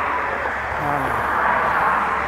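Road traffic going by: a steady rush of tyre and engine noise that swells and eases, over a low hum.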